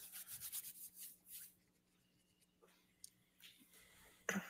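Near silence with faint rubbing and rustling noises: a quick run of them in the first second and a half, then a couple of light clicks near three seconds, over a low steady hum.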